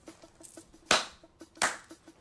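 Two sharp hand smacks, about three-quarters of a second apart.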